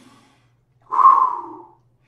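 A man taking a slow, deep breath close to the microphone: a faint rush of air right at the start, then a louder rush of breath about a second in that lasts most of a second and fades out.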